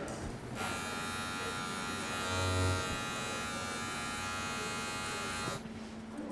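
Handheld electric barbering tool running with a steady buzz. It switches on about half a second in and cuts off about a second before the end, with a brief low bump midway.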